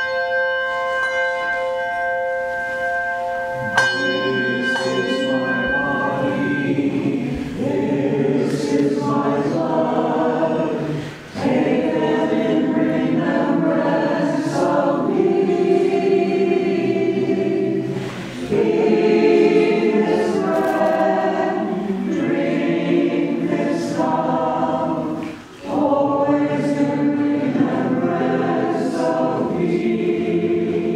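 A group of voices singing a hymn in unison or parts during communion, in phrases with short breaths between them. The singing begins about four seconds in, after a few held instrumental notes.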